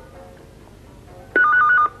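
A telephone ringing: one short electronic ring, a warble rapidly alternating between two tones, coming in a little over a second in and lasting about half a second.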